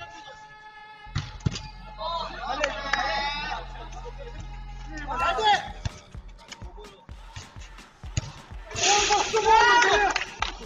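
Men shouting and calling during a five-a-side football game, loudest near the end, over background music, with sharp knocks of the ball being kicked.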